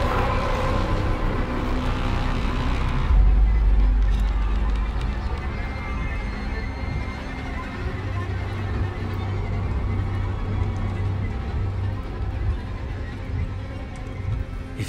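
Dark horror film score: a brighter sustained texture cut off about three seconds in by a sudden deep boom, then low droning tones held under a quieter bed.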